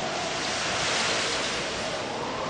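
Stormy-sea sound effect: a steady rush of heavy waves, swelling a little and then easing off.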